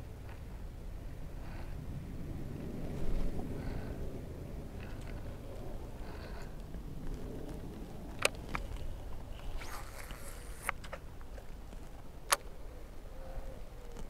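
Quiet boat background with a low steady rumble, broken by a few sharp clicks and knocks from rods and reels being handled. The loudest clicks come about eight and twelve seconds in.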